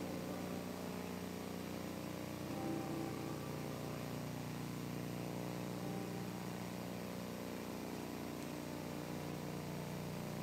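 A steady low hum of room noise, with a few faint notes of instrumental music in the first few seconds.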